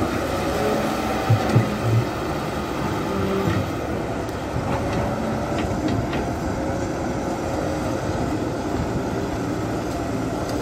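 Crawler excavator's diesel engine running steadily, with a faint hydraulic whine that slowly shifts in pitch as the boom and bucket move. A few sharp knocks about a second and a half in.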